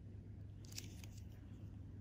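Faint steady low hum with a short run of light clicks near the middle.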